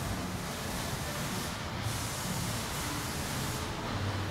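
Steady machine-shop background noise: an even hiss with a low hum underneath.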